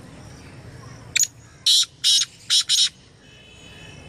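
Black francolin (kala teetar) calling close by: one loud phrase of five short, high-pitched notes about a second in. A single note is followed after a pause by four more in quick succession.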